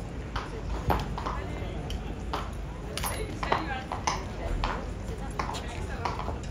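Tourists' voices chattering, broken by a string of sharp clinks and knocks, a little under two a second: the cavalry horse's hooves on the stone floor of the sentry box and its metal bit and tack jingling as it stands.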